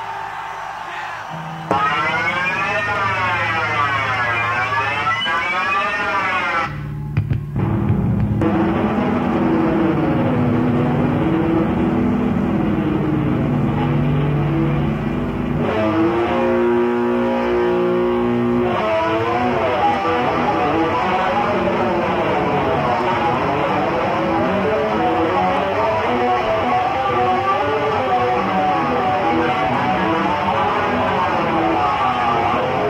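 Electric bass solo played live through distortion and a wah pedal. The tone sweeps up and down about once a second, breaks off briefly near seven seconds, and goes into a held low note and a steady chord before the sweeping returns.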